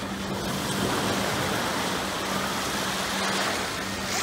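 Shallow sea surf washing up the beach around the sitters, a steady rush of breaking waves and foam that grows a little louder about a second in.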